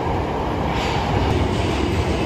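Tokyo Metro Marunouchi Line subway train running in the station, a steady rumble that grows slightly louder.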